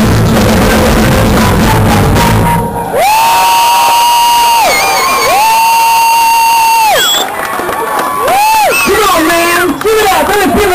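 A rock band playing loud with drums, cutting off about three seconds in. The singer follows with unaccompanied wailing notes, two long held ones that bend up at the start and down at the end, then shorter sliding ones.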